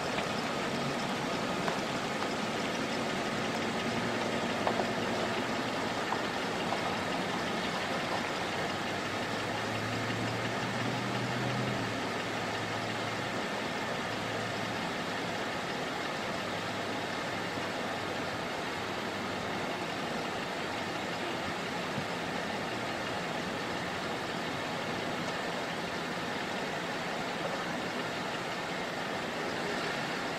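Car engines idling and moving slowly in the street over a steady wash of outdoor noise, with a deeper engine hum standing out for two or three seconds about ten seconds in.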